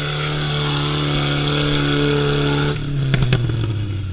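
A UAZ 4x4's engine running hard under load as it churns through deep mud, holding a steady note. Near the end the note drops, and a few sharp knocks follow.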